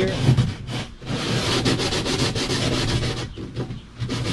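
Fine 400-grit sandpaper rubbed by hand around the wooden rim of a strip-built kayak's cockpit opening, in quick back-and-forth strokes. It pauses briefly about a second in and again near the end.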